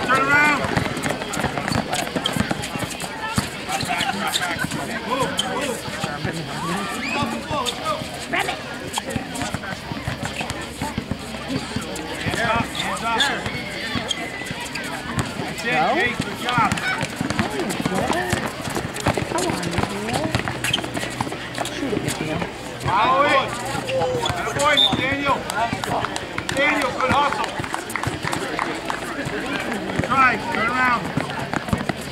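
Sounds of a basketball game in play: indistinct voices of players and spectators calling out, with the ball bouncing and players' feet running on the court.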